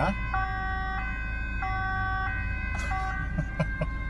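Dutch police two-tone siren, switching between its two pitches about once a second, over a steady low engine rumble. A few short knocks near the end.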